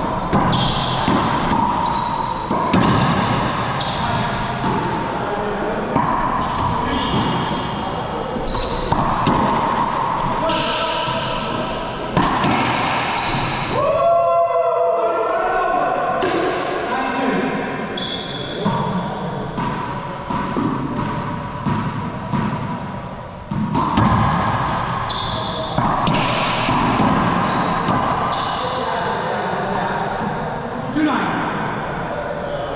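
Racquetball hits and bounces echoing in an enclosed court: a rubber ball repeatedly strikes racquets, walls and the hardwood floor at irregular intervals.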